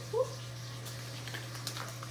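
Light clicks and rustles of a paper seed packet being handled, a few short ticks, over a steady low hum.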